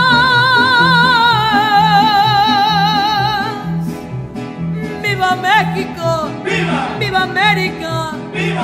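Mariachi band playing: a long held note with wide vibrato ends about three and a half seconds in, then short melodic runs follow over a steady plucked bass beat.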